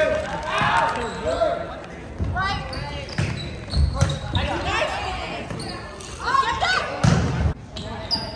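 Indoor volleyball rally on a hardwood gym court: the ball is struck several times, with sharp hits echoing in the hall, amid players' shouts and calls.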